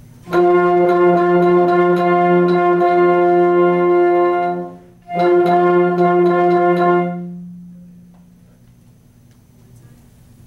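Instrumental ensemble playing two long, steady chords: the first about four seconds long, then after a short break a second one of about two seconds. The upper parts cut off together near the end while a low note rings on and fades.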